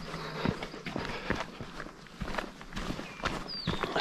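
A hiker's footsteps on a rocky dirt trail: irregular steps, about two to three a second.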